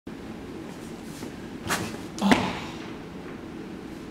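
Two quick swishes about half a second apart, the second louder and ending in a low thud.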